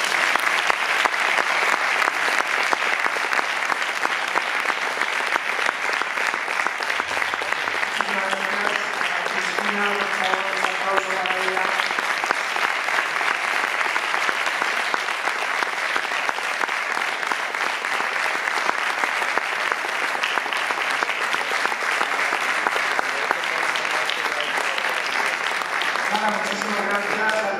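Audience applauding: a long, steady round of clapping from a seated crowd, with a few voices heard through it about a third of the way in.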